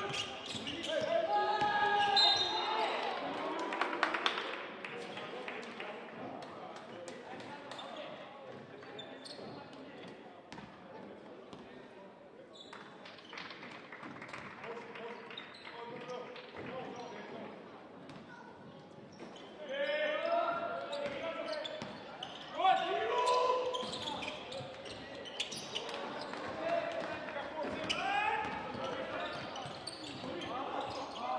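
Live basketball game sound: the ball bouncing on the hardwood court with short knocks throughout, and voices of players and spectators calling out in bursts, loudest near the start and again after about 20 seconds.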